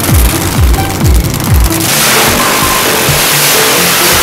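Electronic music with a deep bass beat about twice a second. About two seconds in, the beat drops away and a loud, steady rush from a nitro Funny Car's supercharged V8 doing a burnout takes over.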